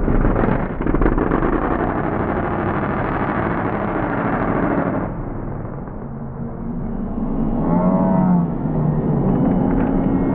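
Supercharged mega truck engine at full throttle on big tractor tires, easing off about five seconds in as the truck goes airborne off the jump, then revving up and down again near the end.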